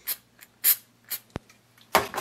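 Aerosol can of Mercury cyanoacrylate glue accelerator sprayed in several short spritzes onto fresh super glue to set it instantly. A single sharp click comes about halfway through.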